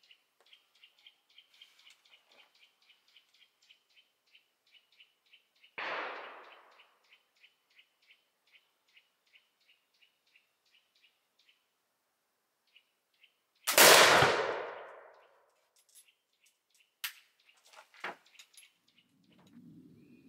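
A reproduction French M1786 flintlock cavalry carbine fires once about 14 s in, a loud shot that rings out for over a second. About 6 s in there is a shorter, quieter burst. A bird chirps over and over at about three calls a second, and a few sharp clicks near the end.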